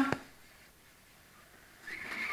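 Mostly quiet garage room tone, then near the end a rustling of nylon ridgeline cord and rainfly fabric being handled as the cord is wrapped around a post.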